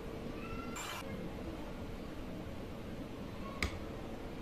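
Metal spoon working cake batter: a short squeak and a brief scrape about a second in, then a single sharp click near the end as the spoon knocks against the bowl or tin. A faint steady hum runs underneath.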